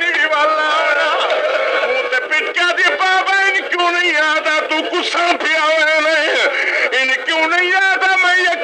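A man's voice chanting a mourning recitation (masaib) in a sung, wavering melody, on an old recording that is thin in the bass and dull in the treble. Other voices overlap with it about a second in and again around five to six and a half seconds.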